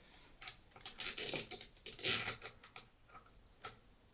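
A metal tap splitter tool being handled and adjusted on a basin tap: irregular small metallic clicks and scrapes, with a longer rattle about two seconds in.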